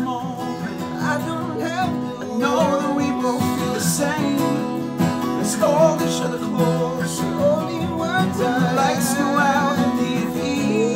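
Two acoustic guitars strummed together under a man's singing voice, an unamplified indie-folk duo playing live.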